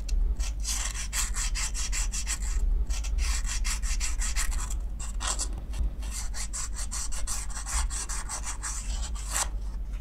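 Sandpaper rubbed in quick back-and-forth strokes around the inner edge of a black metal filter ring, taking its bore out a little at a time for a tight fit. The strokes come several a second in runs, with brief breaks about two and five seconds in and near the end.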